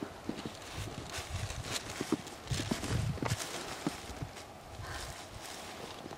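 Irregular soft clicks and knocks, about one or two a second, over a low rumble of wind on the microphone.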